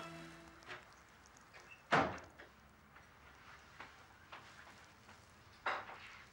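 Background music fades out at the very start. About two seconds in, a wooden door closes with a sharp thud, followed by a few soft footsteps across a room and another knock near the end.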